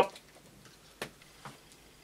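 Handling of a spiral-bound paper coloring book as its split pages are laid open: two brief light ticks, about a second in and half a second later, with fainter paper rustles between.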